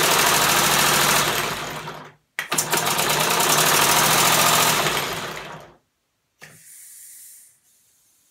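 Home-built three-cylinder compressed-air motor running with a rapid stream of air-exhaust pulses. It cuts out about two seconds in, runs again for about three seconds, then dies away, followed by a short, fainter hiss of air. Only two of its three cylinders and valves are fitted, so it starts only from the right crank position.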